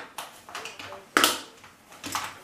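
Makeup products being set down one by one on a table: a few light clicks and knocks of hard containers, the sharpest a little past halfway.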